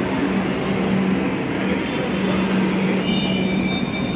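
Kolkata Metro train at the platform, running with a steady hum and a steady low tone. A few thin high-pitched tones come in about three seconds in.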